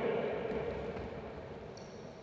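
Quiet ambience of a large indoor sports hall: the echo of a man's voice fading away, leaving faint room noise.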